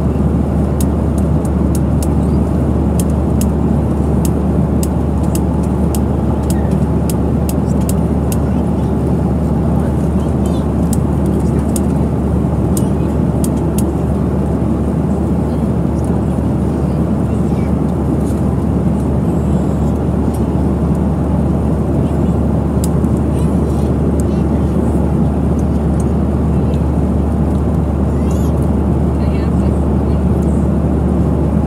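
Steady cabin noise inside a Boeing 737 airliner in descent: a deep constant hum with rushing air over it. A scatter of small sharp clicks sounds over the first half.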